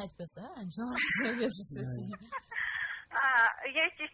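A person's voice, not clearly forming words, with pitch that swoops sharply up and down about half a second in and breaks off in short pieces.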